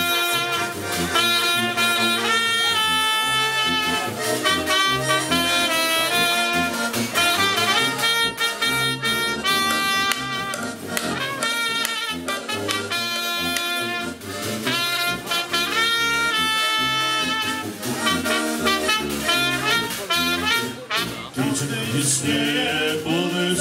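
Kashubian folk band playing an instrumental tune: a trumpet leads the melody over accordion, with a tuba giving a rhythmic bass.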